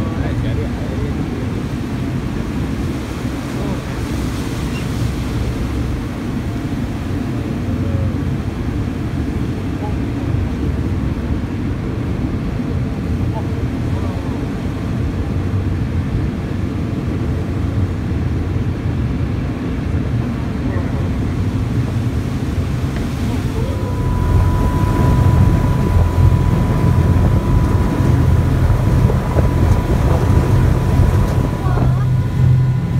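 Sightseeing boat's engine running with churning water and wind on the microphone. About 24 s in, it grows louder and a steady whine joins in as the boat speeds up and throws a wake.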